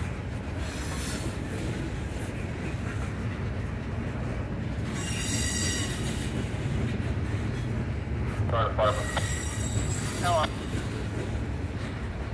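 Freight train's tank cars and covered hoppers rolling past slowly, a steady low rumble of steel wheels on rail. Brief high-pitched wheel squeal comes about a second in and again around five seconds in.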